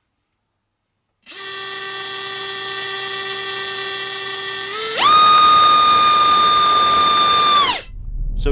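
BrotherHobby R4 Returner 2206 2300kv brushless motor spinning a Gemfan 5045 tri-blade prop on a thrust bench. It starts about a second in with a steady whine, then about five seconds in throttles up to a much louder, higher-pitched whine for the thrust measurement. The pitch then drops and the motor spools down to a stop just before the end.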